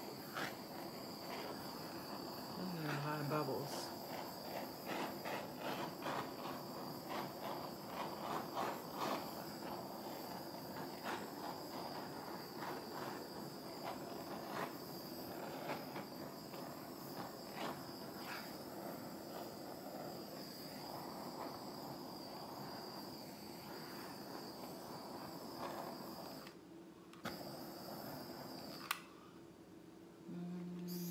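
Small handheld torch hissing steadily over wet acrylic paint, with many small crackles, to pop bubbles and bring up cells in the pour. The hiss cuts out briefly shortly before the end, then stops near the end.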